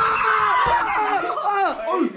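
Excited shouting and yelling from a small group of young people, with a long, high yell at the start.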